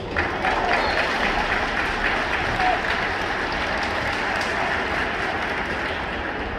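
Stadium crowd clapping, breaking out suddenly just after the start and carrying on steadily, with a few voices in the stands.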